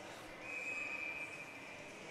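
A faint, steady high whistle held for about a second and a half over quiet arena background noise.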